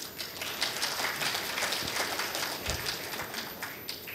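An audience applauding: many dense, overlapping claps that die away near the end.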